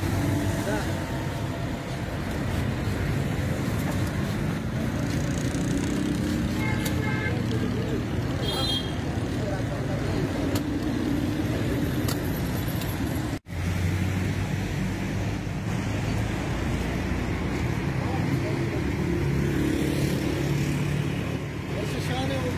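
Road traffic noise: car engines running and vehicles passing on a busy street, with voices over it. The sound drops out for a moment a little past halfway.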